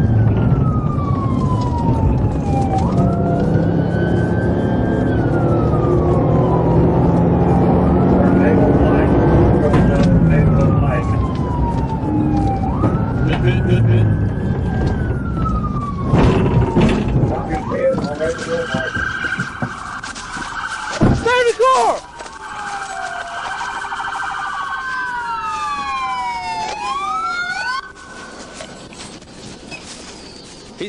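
Police car siren on wail, a slow rising-and-falling sweep repeating about every four seconds over loud engine and road noise from the moving cruiser. About halfway through, the road noise drops away as the car slows and stops while the siren goes on. A brief fast warble comes about two-thirds of the way in, and several sirens overlap near the end.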